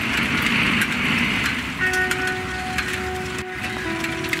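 Street traffic noise from passing cars and bicycles. About halfway through, soft music comes in as held notes that change near the end.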